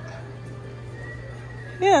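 A steady low hum with faint background music in a large store. A voice says "yeah" near the end.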